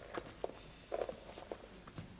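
Footsteps of a person walking across a stage floor: a few faint, irregular steps.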